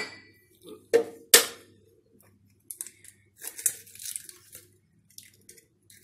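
Kitchen handling noises at a plastic food processor bowl: two sharp knocks about a second in, then a few seconds of light rustling and scraping, with a few small taps near the end.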